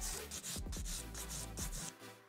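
A 180-grit hand nail file rasping across an acrylic nail in quick repeated strokes as the product is filed down around the cuticle area, over faint background music. The filing stops near the end.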